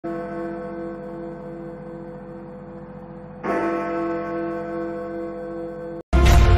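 A deep bell struck twice, at the start and again about three and a half seconds in. Each stroke rings on with a slow wavering hum as it fades.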